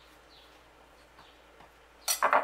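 Near silence, with a few faint, short scrapes of a table knife spreading margarine on a slice of bread.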